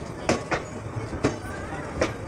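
ICF passenger coaches rolling slowly past, their wheels clacking over rail joints a few times over a low rumble: two clacks close together, then another about a second later.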